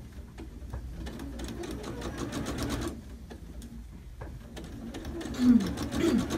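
Electric sewing machine stitching a seam, its needle running in rapid even ticks. It stops about three seconds in and starts again, with a brief low falling sound near the end.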